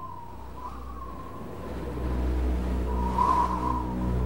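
Ominous film-score drone holding low and steady under a wavering high tone, which swells into a brief whoosh about three seconds in.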